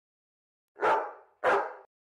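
A dog barking twice in quick succession.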